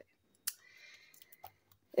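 A colouring book being closed and handled: a sharp click about half a second in, faint paper rustling, and a light tap about a second and a half in.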